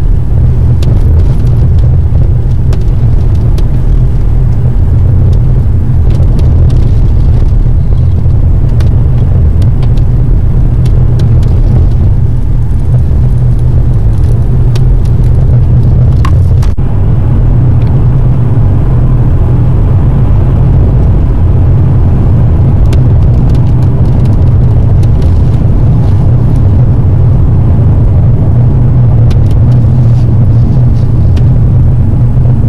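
Steady, loud, low rumble of a car driving, heard from inside the cabin: engine and road noise, with a brief break about halfway through.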